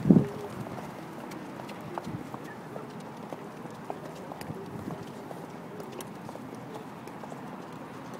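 Footsteps of several people in hard-soled and heeled shoes walking on hard pavement: irregular, overlapping clicks and taps that thin out towards the end. A short, loud burst of voice comes right at the start.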